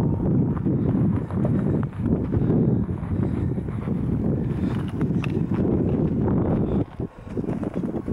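Wind rumbling and buffeting on a handheld camera's microphone, with irregular crunching thuds of footsteps in snow as the camera is carried.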